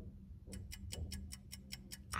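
Rapid, even ticking of a countdown-timer sound effect played from a TV, about six ticks a second, starting about half a second in.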